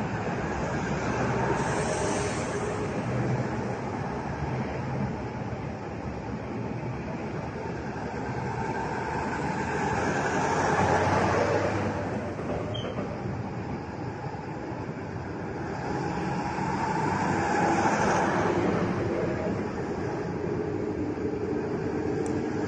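A convoy of Ural military trucks driving past on the road, a continuous rumble of engines and tyres that swells three times as trucks go by.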